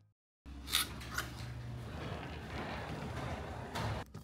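Half a second of dead silence, then faint rustling and handling noise of a camera brushing against a puffer jacket, with a few light clicks.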